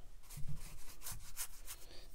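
A wet watercolour brush rubbing in a series of short, scratchy strokes, working paint in the palette and brushing it across cotton cold-press paper.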